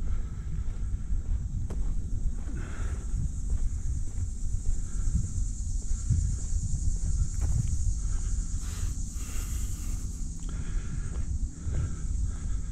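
Footsteps on a dirt and gravel track under a constant low rumble, with a steady high-pitched insect drone.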